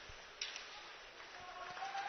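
Faint ice hockey arena ambience during play: a low, even background of crowd and rink noise, with a short click about half a second in.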